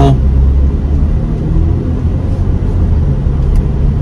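Cabin noise inside a moving 2023 Audi Q5 with its turbocharged 2.0-litre four-cylinder: a steady low rumble of road and engine, with a faint engine hum over it in the second half.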